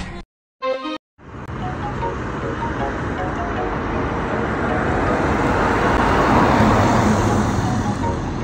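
Dance music cuts off at the start. After about a second of gaps, steady car and road noise begins, slowly growing louder over several seconds, with faint short high notes scattered over it.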